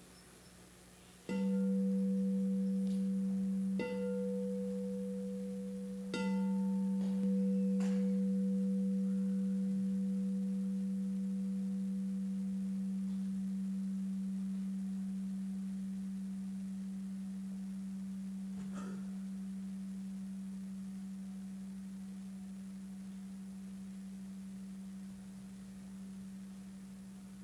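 A singing bowl struck about four times in the first seven seconds, its low steady tone ringing on and slowly fading away, marking the start of a silent meditation.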